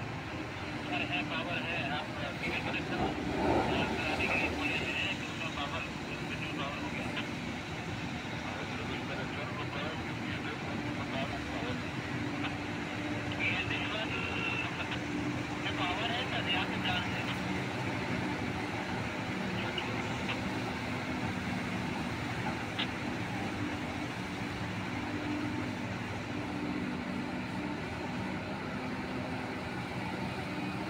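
Large diesel engines of a Tata Hitachi EX1900 mining excavator and a CAT haul truck running steadily as the excavator works, a constant low engine hum with voices heard now and then.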